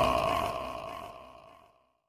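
An echoing, reverberating tail fading out smoothly, with a couple of held tones dying away, until it reaches silence about a second and a half in.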